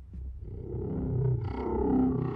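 Horror-trailer sound design: a low rumbling drone that swells steadily louder, with growl-like pitched tones joining it near the end.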